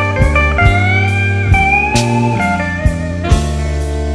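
Slow electric blues played instrumentally by a band: a lead line of held notes that bend and slide upward over steady bass and a few drum hits.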